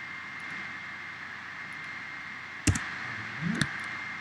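Steady microphone hiss with a thin high whine. Two sharp clicks about a second apart, two-thirds of the way in, from a computer mouse clicking while modeling, with a brief low murmur just before the second click.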